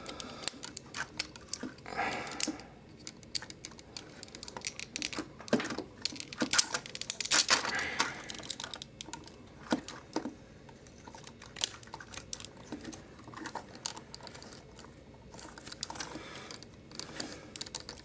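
Plastic parts of a Transformers Voyager-class Fallen action figure clicking and snapping as it is handled and transformed: irregular small clicks of joints, panels and pegs being moved into place.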